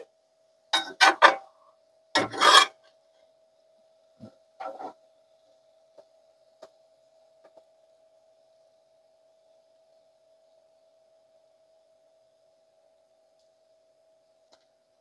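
Metal spatula scraping a cast-iron skillet: a couple of short rasping scrapes in the first three seconds, a shorter one near the fifth second, then a few light ticks of utensil on pan.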